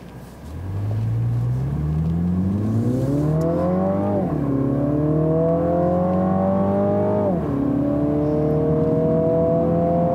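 The 2018 Mini Cooper Clubman John Cooper Works' turbocharged 2.0-litre four-cylinder accelerating hard, heard inside the cabin, its note partly synthesized engine sound. The engine note climbs from about half a second in, drops at an upshift of the eight-speed automatic about four seconds in, climbs again, drops at a second upshift about seven seconds in, then climbs slowly.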